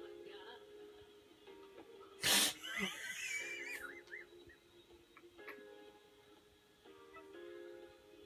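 Music from a television broadcast, picked up off the set's speaker: steady held chords, broken a little over two seconds in by one loud, brief noise burst, followed by a short high wavering tone.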